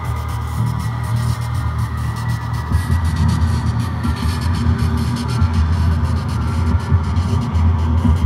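Electronic drone music made of sculpted static and noise: a dense low hum that pulses unevenly, with a few faint steady tones above it and a fine crackling hiss on top, swelling slightly in loudness.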